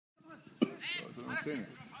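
Voices calling and shouting on a football pitch, with a sharp knock about half a second in.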